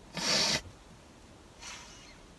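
A short, hissy breath through a man's nose, then a fainter one about a second and a half later.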